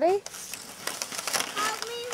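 A young child calls out in a high voice at the start and again near the end, and in between there is crackly crunching and scraping of snow against a plastic sled being pushed along.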